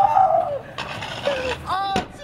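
Young men's voices laughing and calling out.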